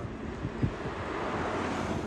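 Outdoor rushing noise that swells through the two seconds, with low buffeting from wind on the microphone.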